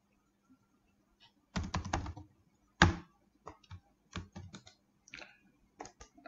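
Computer keyboard typing: a quick run of keystrokes about a second and a half in, then a louder single click and a few scattered light clicks.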